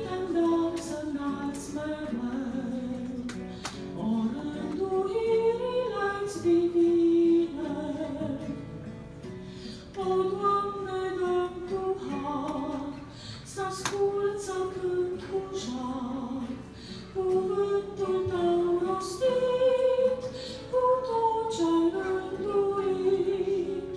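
A woman singing a slow, melodic song solo into a microphone, holding long notes between short breaths.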